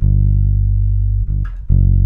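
Electric bass guitar playing a song's bass line in the key of G: one long held note, a short note about a second and a quarter in, then a new note struck near the end.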